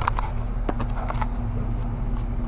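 Handling noise from a jostled handheld video camera: a steady low rumble with a few scattered knocks and bumps.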